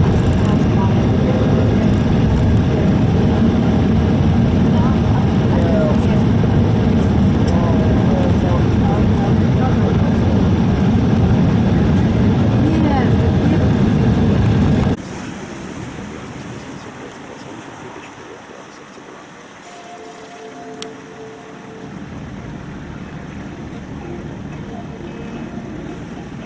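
Steady cabin rumble of an Embraer 175 taxiing on its twin turbofan engines, mostly a deep, dense noise, with faint voices mixed in. About halfway through it cuts off suddenly to a much quieter background.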